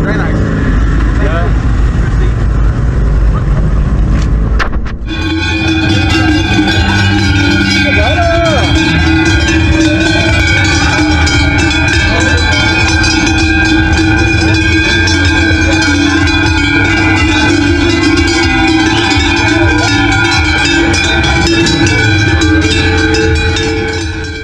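A deep, low engine-like rumble for the first few seconds. About five seconds in it gives way to a group of large Alpine cowbells (sonnailles) swung by hand together: a loud, continuous clanging that holds several ringing pitches at once.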